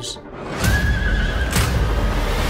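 Loud trailer sound design over music: a noisy surge rises about half a second in and carries a held high tone, with a sharp hit at its start and a second hit about a second later.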